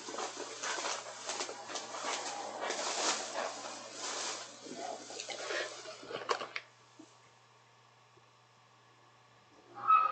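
Plastic shopping bag being handled, rustling and crinkling for about six and a half seconds, then stopping.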